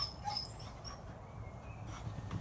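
A plastic box knocks once against a beehive brood box as a swarm of bees is tipped into the hive, followed by a few short, faint high-pitched chirps.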